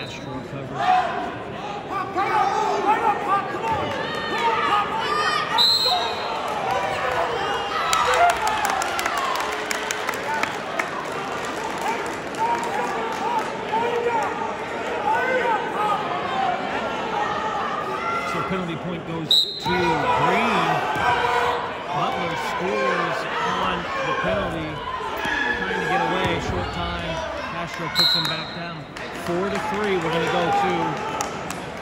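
Spectators and coaches shouting in an echoing gym during a wrestling bout, with short referee whistle blasts four times, near the start, about 6 s in, about 19 s in and near the end.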